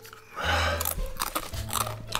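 A crisp chip being bitten and chewed, with a quick run of sharp crunches starting about half a second in.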